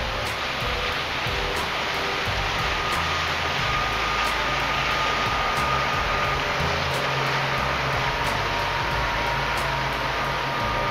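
Outboard motor of a passing boat: a steady rushing run with a high whine that drops a little in pitch about seven seconds in as the boat goes by.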